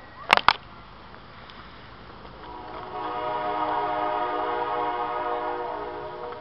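A train air horn sounding one long chord of several notes, building from about two seconds in, holding and easing off near the end. Two sharp knocks come just before it.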